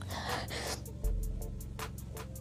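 A crying woman's sobbing gasp, a short breathy intake near the start, over background music.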